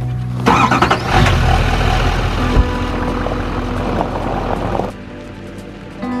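GMC Sierra pickup truck's engine starting about half a second in, then running loudly with strong low rumble, under background music. The engine sound stops abruptly about five seconds in.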